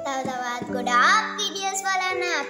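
A young girl's voice sliding up and down in pitch over background music with held notes.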